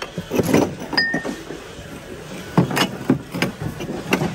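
Ceramic mugs and glass ornaments knocking and clinking together as a gloved hand sorts through them in a plastic bin, with one short ringing clink about a second in.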